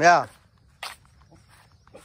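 A single short spoken syllable or exclamation with a falling pitch right at the start, then a brief sharp scuff or click a little under a second later; otherwise quiet outdoor background.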